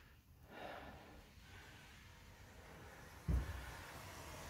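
Quiet room tone with a soft breath from a person, then a single dull low thump about three seconds in.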